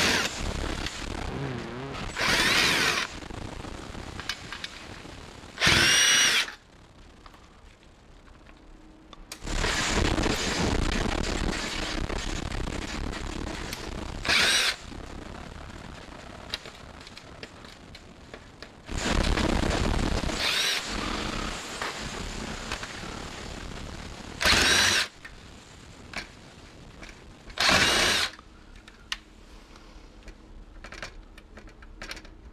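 A cordless drill-driver spins in about seven short bursts, each with a quick rising whine, as it backs screws out of a flatscreen TV's sheet-metal frame. Quieter handling noise fills the gaps between the bursts.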